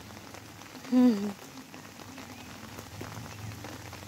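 Steady rain falling on leafy plants, a soft even hiss with scattered drop ticks. A brief voice is heard about a second in.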